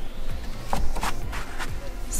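Background pop music with a steady drum beat, with fabric and paper rustling briefly about a second in as a planner is slid into a fabric cover pocket.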